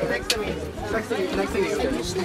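Several people chattering, voices overlapping.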